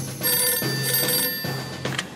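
Cartoon telephone ringing in three short bursts of a steady electronic tone, stopping near the end as the receiver is picked up.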